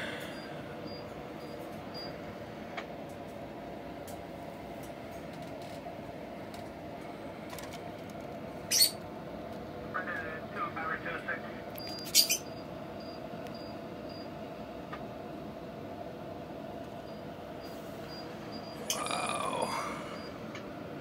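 A steady low hum with two sharp clicks, about three seconds apart, and a short patch of small rattling sounds between them; a louder passage comes near the end.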